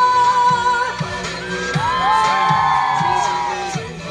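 Live pop band music with a steady beat of about two drum hits a second and a long held note in the first second; from about two seconds in, several audience members whoop over the band.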